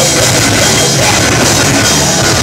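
A live heavy hardcore/metal band playing loud: distorted guitars and bass over a pounding drum kit, a dense, unbroken wall of sound.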